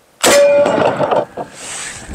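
A single 12-gauge shotgun shot from a Mossberg with a fully rifled barrel, firing a one-ounce tungsten slug: a sudden loud blast about a fifth of a second in, with a short ringing tone and a fading tail after it.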